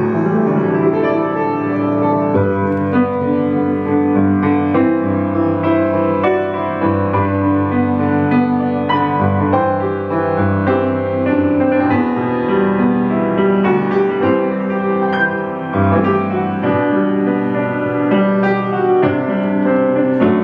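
A 1926 Steinway Model M 5'7" grand piano played without a break, with chords and a melody over a sustained bass and many notes ringing together.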